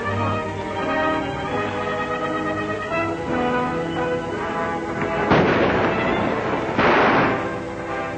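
Orchestral film score playing, cut by two loud noisy bursts about a second and a half apart near the end: gunshots.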